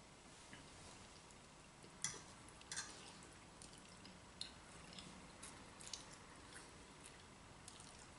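Faint eating sounds: a few short clicks of a fork in a frying pan and soft mouth noises of chewing spaghetti, over near silence.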